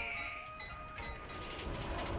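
Faint music fades out as a rattling mechanical clatter builds in the second half, the sound of a propeller airplane's piston engine running.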